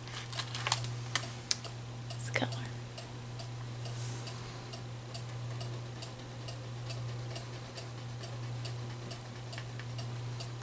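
Wax crayons clattering in a basket as one is picked out, then a crayon scribbling on paper in quick, regular strokes. A steady low hum runs underneath.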